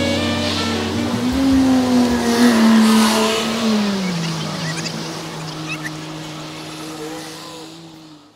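Jazz combo music ending on long held notes, one of them sliding down in pitch about halfway through, then fading out.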